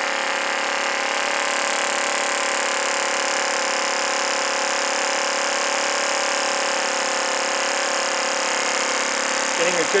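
An old Italian Z-motor compressed-air engine running steadily at one constant pitch, spinning a 7-inch propeller: a steady whir with a hiss of escaping air. It gives a good bit of thrust but is running backwards.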